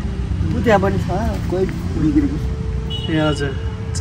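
Voices talking in short phrases over a steady low rumble of road traffic.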